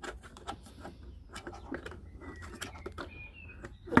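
Hard plastic signal-booster reflector being handled and fitted onto a drone remote controller's antenna: a string of light clicks and taps, with one sharp, louder click near the end.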